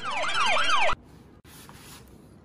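Siren sound effect: a fast, repeating falling whoop, about four sweeps in a second, loud and cutting off abruptly.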